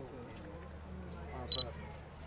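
Two sharp, high-pitched clicks in quick succession about one and a half seconds in, much louder than everything around them, over low murmuring voices.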